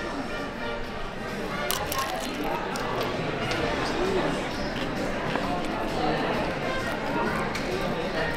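Background chatter of distant voices in a large indoor dining hall, steady throughout, with a few faint clicks.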